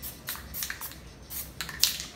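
Aerosol spray paint can sprayed in several short bursts, each a brief hiss, the last and strongest near the end, as the painting is retouched.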